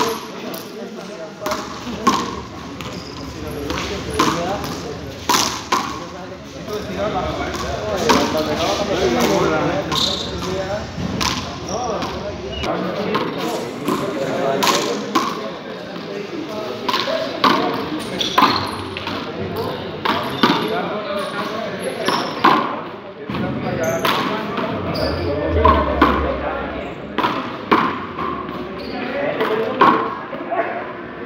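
Handball rally in a walled court: a ball struck by hand and hitting the walls and floor, sharp hits about one or two a second.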